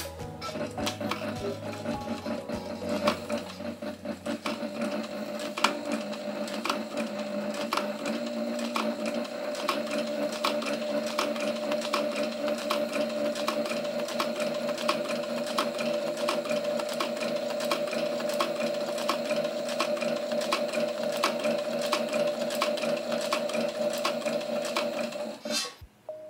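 Industrial walking-foot sewing machine stitching through leather, a steady run of needle clicks over the steady hum of its motor.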